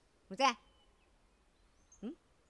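A short spoken word about half a second in, then a quiet stretch with a couple of faint, high bird chirps.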